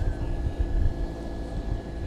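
Low, steady background rumble with a faint steady high tone running through it.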